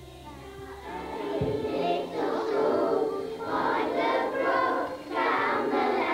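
A group of children singing their school song together, fading in over the first second or two and then singing steadily.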